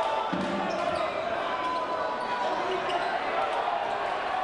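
Basketball game in an indoor arena: a steady hum of crowd voices in the hall, with the ball bouncing on the court and players calling out.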